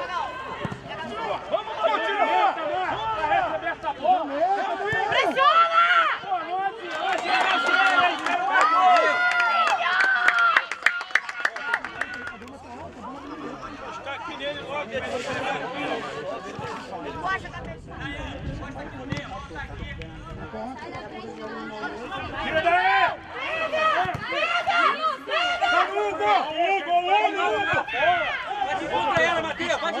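Several voices talking and calling out at once, with no single clear speaker; louder at first, dropping back in the middle, and louder again near the end.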